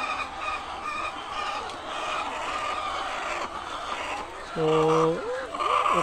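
A flock of caged white laying hens clucking and calling in a steady chorus, many short calls overlapping; a man's voice comes in near the end.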